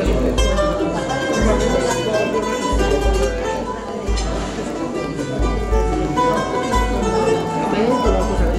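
Bowl-back mandolin played live, picked and strummed, with a voice singing along.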